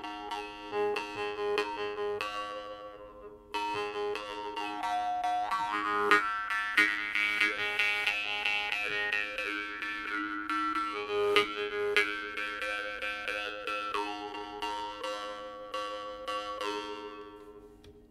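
A Sicilian maranzano jaw harp made by Turi Petralia, played by mouth: a steady drone with a melody of shifting overtones over it, driven by repeated plucks of the tongue. It breaks off about two seconds in, starts again with a fresh pluck about a second later, and fades out at the end.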